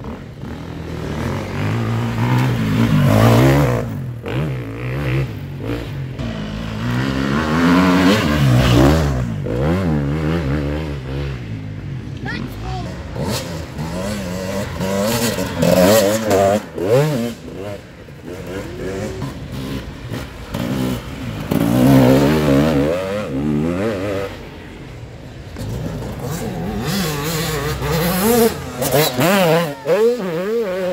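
Enduro dirt bikes revving hard on the throttle as they ride up a dirt track, the engine note wavering up and down. It swells and fades several times as one bike after another comes close and goes past.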